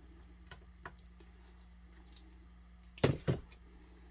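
Screwdriver and hands working on the ignition points of a Homelite XL-76 chainsaw: a few faint metal clicks, then two sharp metallic knocks about a quarter second apart about three seconds in, over a steady low hum.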